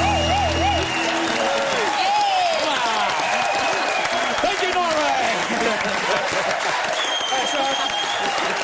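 A studio audience applauding and cheering, with whoops and shouts over steady clapping. For about the first second the band's final held chord and the singer's last wavering note ring out, then stop.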